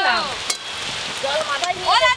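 Food sizzling as it fries in oil in a pan while being stirred with a spatula, a steady hiss with one sharp click of the spatula about half a second in.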